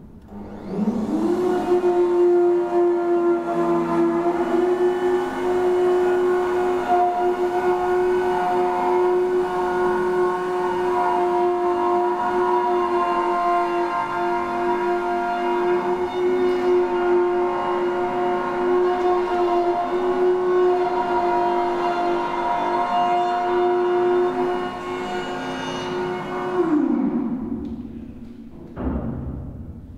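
A machine hum that rises in pitch over about a second as it starts, holds one steady tone with many overtones, and falls away in pitch as it winds down near the end.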